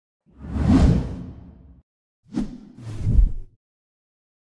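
Whoosh sound effects: one long swelling whoosh, then after a short gap two shorter whooshes in quick succession.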